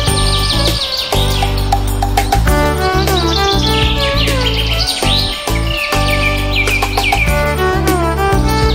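Background music, a melody of sustained notes that change every half second or so, with quick high bird-like chirps and twitters running over it.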